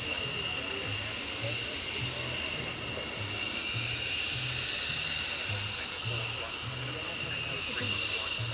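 F-16 fighter jets taxiing with their engines at idle, a steady high-pitched whine in several tones. A low rhythmic beat, like public-address music, runs underneath.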